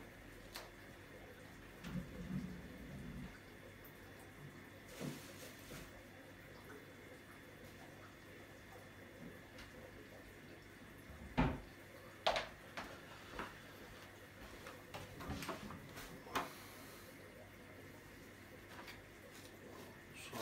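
Low, steady hum of aquarium filter equipment, broken by scattered faint knocks and clatters of things being moved about during a search for a missing siphon head. The loudest knock comes a little past the middle.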